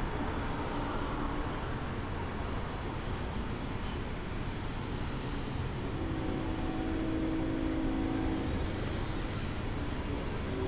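Steady low rumbling background noise, like a fan or air handling running. A faint steady hum joins it about six seconds in and fades near nine seconds.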